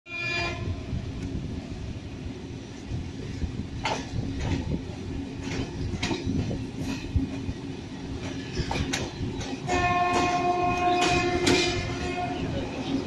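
Passenger coaches of a departing train rolling past at low speed: a steady low rumble with wheels clicking over rail joints about once a second. A sustained pitched tone with overtones sounds for about two and a half seconds near the end, with a brief one at the very start.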